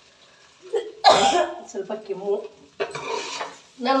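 A woman coughing: one loud cough about a second in, then throat sounds and a further cough a little before the end.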